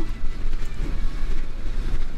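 Harley-Davidson touring motorcycle's V-twin of about 1700 cc running steadily at cruising speed, mixed with wind rushing over the rider's microphone. It is a continuous low rumble and rush with no distinct events.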